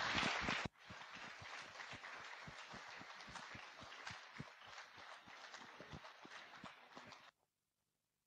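Audience applause, louder for the first moment and then faint, a dense patter of claps that stops suddenly about seven seconds in.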